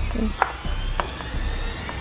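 A chef's knife slicing through a carrot onto a wooden chopping board: a few sharp chops, spaced roughly half a second to a second apart, over background music.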